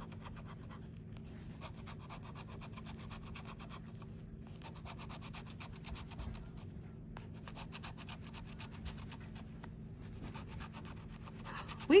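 A metal bottle opener scratching the coating off a scratch-off lottery ticket in rapid short strokes, with a few brief pauses.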